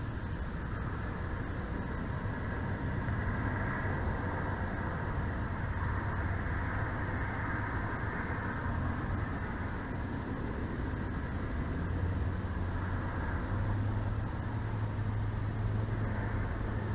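Steady outdoor background rumble with a soft hiss, growing a little stronger near the end.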